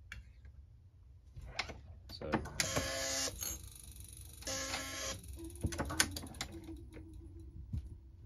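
Hornady AP progressive reloading press being cycled by hand: clicks and knocks from the handle linkage and shell plate, with two short squeaking strokes as the ram goes down and comes back up, then a few sharp clicks as the shell plate indexes with a finger resting on it to damp the snap.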